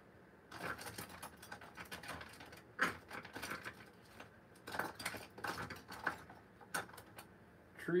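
Irregular light clicks and clatter of painting tools being handled while a brush is picked out, a few knocks louder than the rest.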